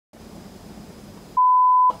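An editor's censor bleep: a single steady 1 kHz beep, about half a second long, starting about 1.4 s in. The surrounding audio is muted, as when a spoken word is bleeped out. Faint room tone comes before it.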